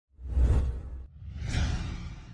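Two whoosh transition sound effects: a deep swish that peaks about half a second in and cuts off just after a second, then a second whoosh that swells up and fades by the end.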